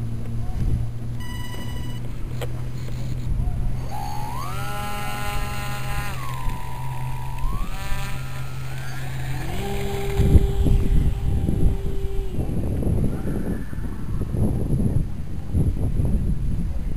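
Small electric motor of a HobbyZone Super Cub RC plane whining, its pitch gliding up, holding, dropping and rising again with the throttle, over a steady low hum. In the second half, gusty wind and handling noise on the microphone.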